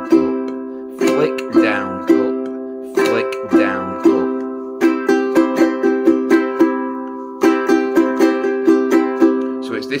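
Resonator ukulele strummed on one held chord. First come single strokes about a second apart; then, from about five seconds in, a quicker run of down-down-up split-stroke strums with first finger and thumb, about four strokes a second.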